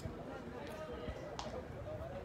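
Faint, distant voices of footballers and onlookers calling out during a match, with one brief sharp click about three-quarters of the way through.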